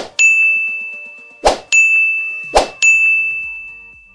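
End-screen button-animation sound effects: three brief swishes, each followed by a bright bell-like ding that rings on one pitch and fades. They come at the start, about a second and a half in, and near three seconds in.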